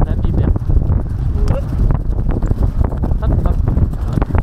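Several racehorses galloping on turf close around the rider, with a dense, irregular patter of hoofbeats over a heavy rush of wind on a microphone carried by the galloping horse and rider.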